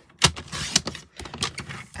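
Paper trimmer's blade being slid along its rail to cut a sheet of patterned paper: a sharp click about a quarter second in, then a short scraping slide and a few lighter clicks.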